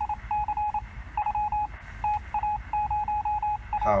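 A string of short electronic beeps at one steady pitch, in uneven groups of long and short beeps, laid in as a sound effect over a low background hum.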